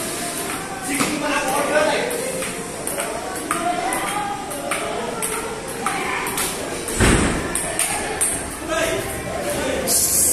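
Table tennis rally: the ball clicking sharply off the paddles and the table again and again, with people talking over it and one heavier thump about seven seconds in.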